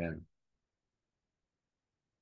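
A person's voice briefly, a single short syllable that ends just after the start, then silence.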